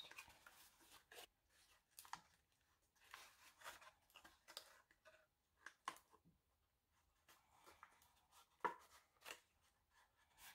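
Faint, intermittent rustles and crinkles of cardstock as fingers press and rub back and forth along the glued seams of a paper box.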